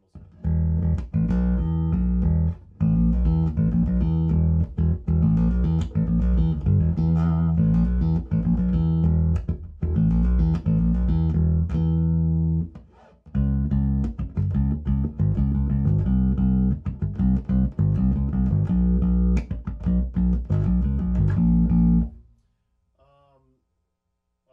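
Electric bass guitar played through a bass amp head and a 2x12 cabinet with Beyma 12WR400 woofers and a tweeter, EQ'd with the upper mids boosted around 2 to 2.5 kHz so the woofers growl. A continuous bass line with a short break about halfway, stopping about two seconds before the end.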